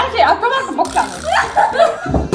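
Young women laughing and chuckling, mixed with bits of talk.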